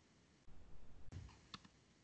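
Faint computer clicks, a few short ones in the second half, from paging through a digital textbook on screen.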